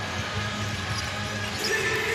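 Basketball dribbled on a hardwood court over steady arena crowd noise.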